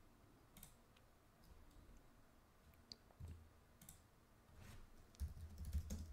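Faint, scattered clicks of a computer mouse and keyboard as a search term is typed, with a few soft low bumps near the end.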